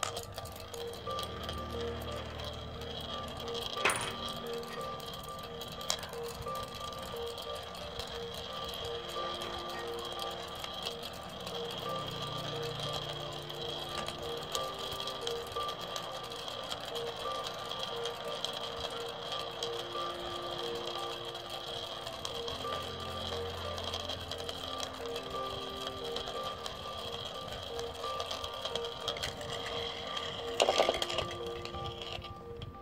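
A plastic LEGO spinning top spinning on a concave mirror, with small balls rolling round and rubbing against its discs: a steady whirring hum that pulses regularly over a fast rattle. A sharp click comes about four seconds in and another about two seconds later.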